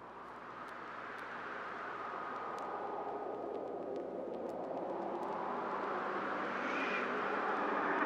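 A rushing noise swells steadily louder throughout, with scattered faint clicks. It is the opening sound effect of an old-time radio drama, building toward its theme music.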